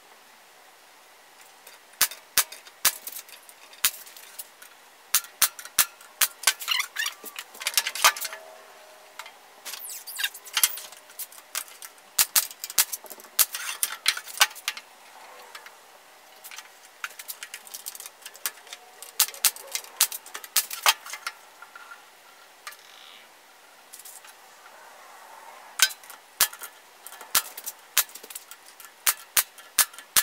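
Wooden frame pieces knocking and clicking against each other and the table saw's metal top as they are handled and fitted together, in sharp single knocks and quick clusters.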